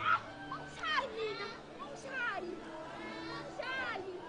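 High-pitched cries and squeals from several overlapping voices, rising and falling in quick arching swoops.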